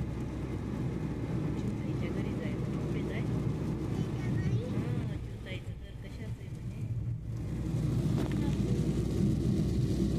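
Road noise heard inside a moving car's cabin on a wet highway: a steady low rumble of engine and tyres, dipping a little past the middle and rising again near the end.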